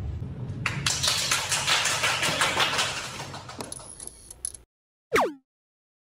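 Boots of a group of line dancers stepping and scuffing on a wooden floor: a dense run of quick clicks and shuffles for about four seconds that fades and then cuts off abruptly. After a moment of silence, a short sound falls steeply in pitch.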